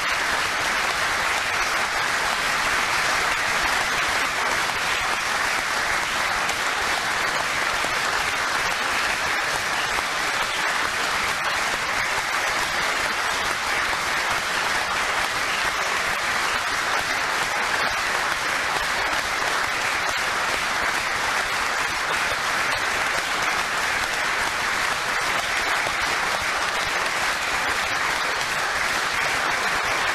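Sustained applause from a chamber full of standing parliament members clapping steadily, without a break or a swell.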